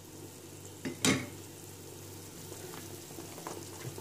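Pot of spiced broth bubbling steadily at a boil, with one sharp clack about a second in.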